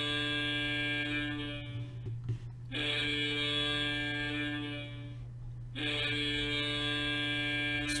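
Hockey goal horn sounding to mark a big hit: three long, steady blasts of two to three seconds each, with short breaks between them, over a constant low electrical hum.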